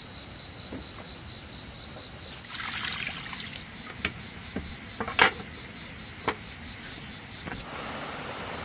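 Night insects trilling steadily at a high pitch. Water sloshes about three seconds in, followed by a few sharp knocks, the loudest about five seconds in, as the pot and basin are handled.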